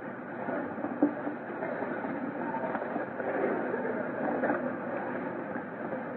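Steady hiss and rumble of an old, muffled recording, with faint indistinct sounds from the hall.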